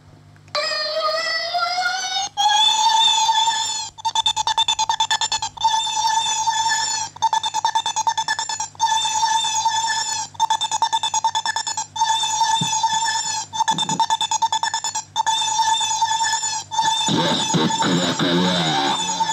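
A synthesized electronic tone in electronic music that glides up in pitch over the first two seconds, then holds one steady high note. The note has a fast buzzing pulse and is chopped into blocks about every one and a half seconds.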